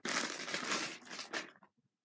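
Plastic squishy packaging crinkling and rustling as a foam pretzel squishy is pulled out of it by hand. The sound breaks off about a second and a half in.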